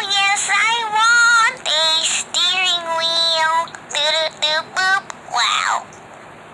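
A girl's voice singing a run of short melodic phrases, the last ending on a falling note before it stops, played back from a phone screen.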